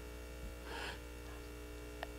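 Steady electrical mains hum from a microphone and sound system, with a faint, brief puff of noise just under a second in.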